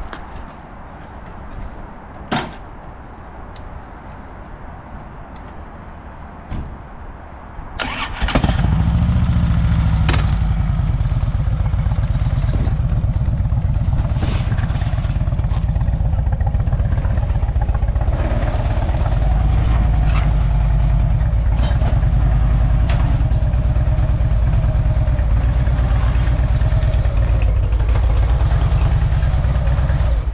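Harley-Davidson Electra Glide's 1600 cc V-twin engine starting about eight seconds in, after a single click, then running steadily.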